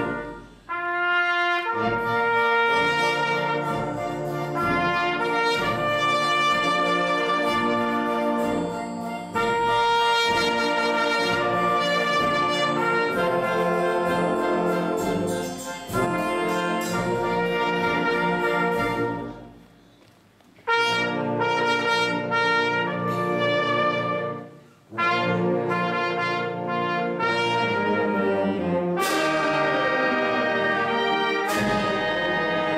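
Live wind band of brass and clarinets playing sustained chords under a conductor. The music breaks off briefly about a second in and again about two-thirds of the way through, where it falls almost silent for about a second before the band comes back in.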